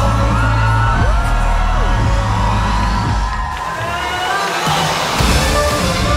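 Live pop music through a concert sound system with a heavy bass beat, the crowd cheering and screaming over it. The bass drops out for a moment past the middle, then the music comes back in.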